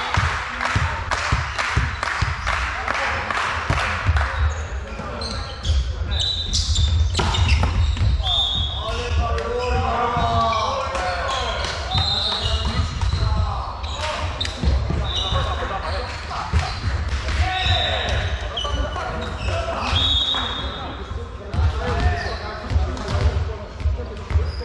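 Indoor volleyball game: the ball being hit and bouncing off the floor with frequent sharp knocks, sneakers squeaking briefly on the wooden court, and players calling out, all echoing in a large sports hall.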